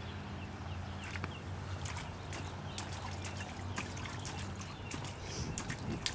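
Small, irregular splashes and drips of water as a toddler's hands paddle at the edge of a shallow inflatable kiddie pool, over a steady low hum.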